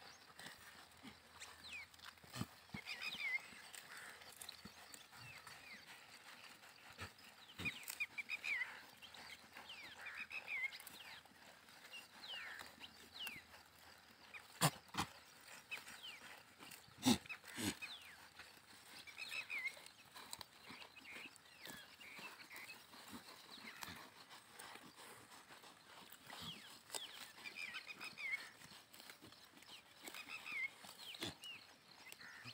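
A herd of goats and sheep grazing: scattered soft tearing of grass and hoof steps, with two sharper knocks about halfway through. High chirps come a few times over it.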